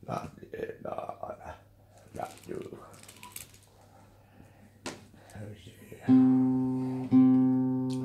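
Two plucked notes on a guitar about a second apart, each ringing and fading away. Before them come a few soft handling sounds.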